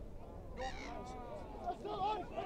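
A spectator's loud shout about half a second in, with other voices from the crowd near the end.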